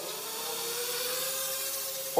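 Brushless motors and propellers of an HGLRC Rekon 3 nano quadcopter (1S, single 18650 cell) spooling up at takeoff. The whine rises in pitch over the first second, then holds steady, over a steady hiss.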